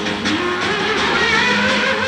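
Live rock band playing, with electric guitar notes bending over a steady bass note and cymbal and drum hits.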